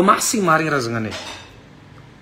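A man's voice speaking one short phrase that falls in pitch, then a quiet room.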